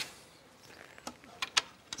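A few faint, short clicks and taps of hand work on a wooden frame, scattered over the second half of an otherwise quiet stretch.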